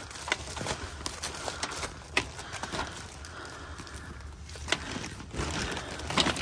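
Wet magazines and papers being picked up and shifted by hand: scattered light knocks and rustles over a steady low hum.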